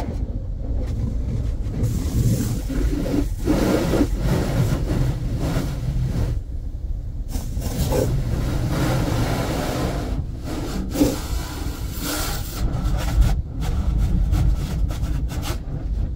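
Car wash heard from inside the car's cabin: continuous rubbing and scrubbing against the body over a steady low rumble, rising and falling irregularly.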